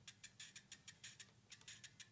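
Arduino Robot's small onboard speaker playing 8-bit music faintly, heard as a fast, even ticking of about seven ticks a second with a faint high tone under it.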